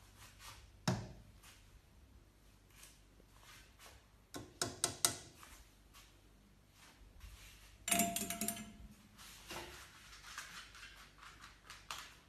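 Scattered thumps and knocks in a small room: a sharp thud about a second in, a quick cluster of knocks around five seconds and another around eight seconds, with quieter clatter in between.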